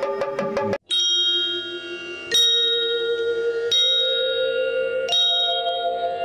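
Short burst of drum-led music that cuts off under a second in, then a bell struck four times at an even pace, about once every second and a half, each stroke left to ring with several clear tones.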